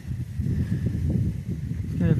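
Low, uneven rumbling noise with no clear tone or rhythm.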